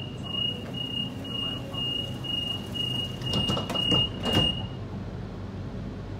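Sydney Trains Waratah door-closing warning: a run of about ten short, high beeps at one pitch, roughly two a second, sounding as the doors close. Near the end of the beeps come loud clatters as the sliding doors shut, over the carriage's steady low hum.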